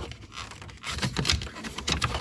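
Plastic steering column cover halves being pulled apart and handled: a scatter of light clicks and scrapes of hard plastic.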